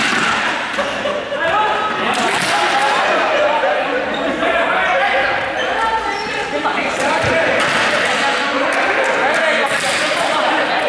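Many voices chattering and calling at once in a large echoing sports hall, with a few sharp ball bounces on the court floor.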